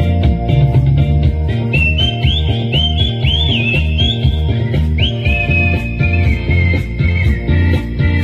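A man whistling a melody into a stage microphone, the tune sliding up into higher notes with scooping slides in the middle and settling lower again, over a pop backing track with a steady bass beat.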